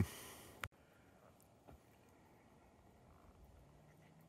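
Near silence, with one short faint click about half a second in, after which the sound drops away almost entirely.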